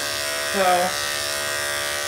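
Corded electric dog-grooming clippers running with a steady buzz as they are drawn through a goldendoodle's coat on a second, blending pass.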